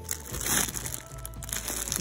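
Clear plastic bags around folded T-shirts crinkling as they are flipped through by hand, loudest about half a second in, over faint background music.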